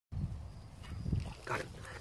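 Low rumble of handling and wind noise on the microphone while a fish is hooked on a rod, with a brief voice-like grunt about one and a half seconds in.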